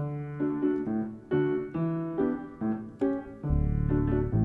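Instrumental break in a song: a keyboard plays a melody of separate notes, each fading after it is struck, with a low bass note coming in near the end.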